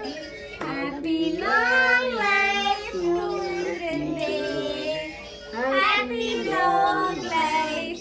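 Singing voices carrying a melody, with long held and wavering notes.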